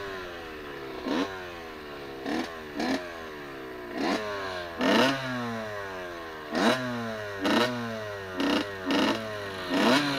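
Dirt bike engine blipped about ten times in quick, uneven succession, each time jumping sharply in pitch and then dying back down over about a second.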